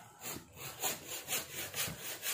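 Plastic wrapping and cardboard packing rubbing and scraping as the boxed engine is handled, in soft repeated strokes about two a second.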